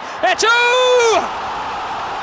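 Football commentator's long, high excited shout, held for under a second, then steady crowd noise in the stadium.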